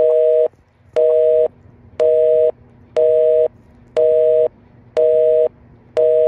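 Telephone busy signal: a steady two-tone beep, half a second on and half a second off, repeating once a second about six times.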